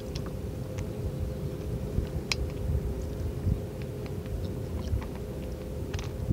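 Wind rumbling on the microphone of a camera mounted on a plastic kayak, with small clicks and ticks of water lapping against the hull and a faint steady hum underneath.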